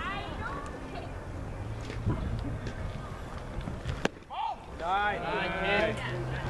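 A single sharp pop about four seconds in, a pitched baseball smacking into the catcher's leather mitt, then a voice calls out loudly near the end.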